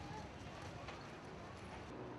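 Outdoor street ambience: a steady background of noise with faint distant voices and a few scattered clicks or knocks.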